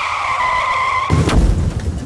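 Sound effect of car tyres screeching, cut off about a second in by a loud crash that rumbles and dies away.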